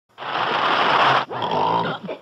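A loud, raspy growl from a human voice in two bursts: a rough, noisy one of about a second, then, after a brief break, a shorter one with more pitch in it.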